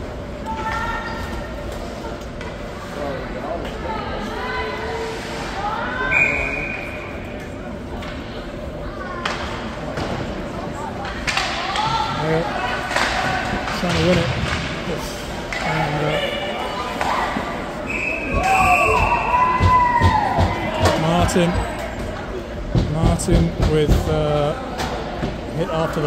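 Ice hockey play echoing in a small rink: shouting voices and clacks and knocks of sticks and puck against ice and boards, busiest in the second half.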